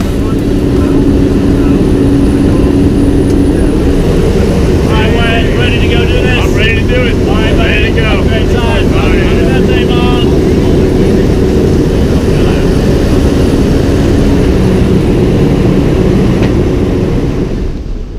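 Loud, steady engine and propeller noise inside the cabin of a skydiving jump plane in flight, with a low hum running under it. Voices shout over the noise for a few seconds in the middle.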